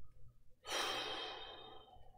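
A man sighs: one long, breathy exhale that starts a little over half a second in and slowly fades away.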